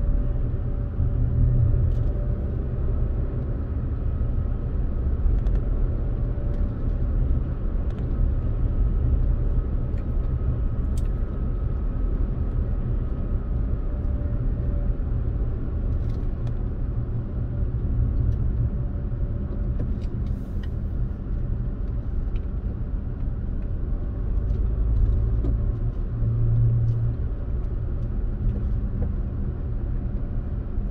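Steady low rumble of road and engine noise inside a Toyota RAV4's cabin as it drives along at road speed. A faint high whine sits over the rumble through the first half, then fades.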